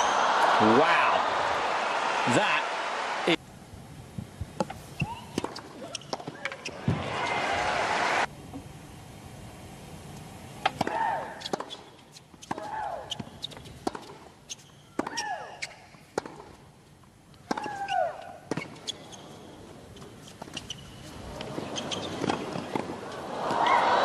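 Tennis match sound: crowd applause between points, and in between the sharp pock of racquet strikes and ball bounces on a hard court, with players' short grunts and shrieks on their shots.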